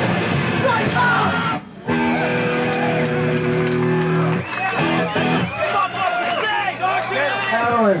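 Hardcore punk band playing live with distorted electric guitars. The song breaks off briefly, then a final chord rings out for about two and a half seconds, and loud shouting voices follow.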